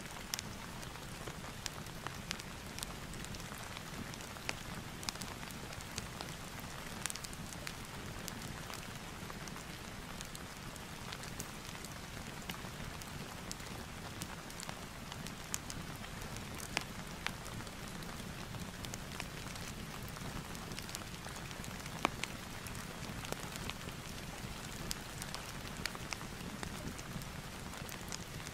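Steady rain mixed with a crackling fireplace, with scattered sharp pops and ticks.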